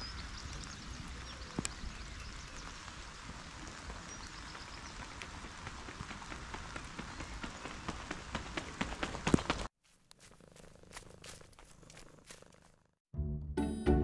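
Steady rain falling on an outdoor running track: an even hiss with scattered drop ticks. It cuts off suddenly about ten seconds in, and music with a beat starts near the end.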